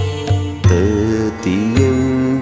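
Devotional chant-style singing over instrumental music with a steady low drum pulse; the voice comes in about half a second in, its pitch wavering and sliding between held notes.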